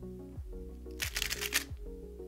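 Background music with a steady beat, and about a second in a quick flurry of plastic clicks lasting about half a second: a GAN 356 Air SM speed cube's layers being turned rapidly by hand.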